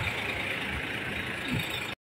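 Steady hum of city street traffic, with no voices over it, cutting off suddenly to silence right at the end.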